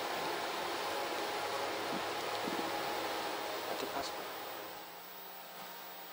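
Steady background noise of the billiards venue with a few faint, brief sounds; no cue strike is heard. The noise drops slightly about four and a half seconds in.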